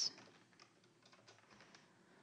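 Faint, scattered keystrokes on a computer keyboard as a command is typed.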